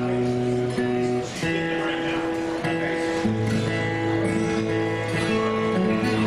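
Two acoustic guitars playing an instrumental tune together: picked melody notes over a moving bass line, with the chord changing about a second in and again about three seconds in.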